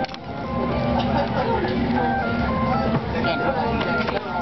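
Passengers chattering in a motion-simulator ride cabin, over a tune of short electronic beeps stepping up and down in pitch from the cabin's sound system.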